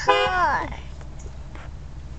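A car horn honking once, short, less than a second, its pitch sagging as it cuts out.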